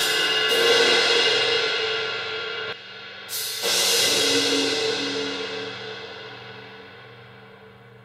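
Sampled suspended cymbal from the Wavesfactory Suspended Cymbals Kontakt library, played through a convolution reverb. It rings and swells, is cut off sharply a little under three seconds in, then rings again from about three and a half seconds in and fades slowly away.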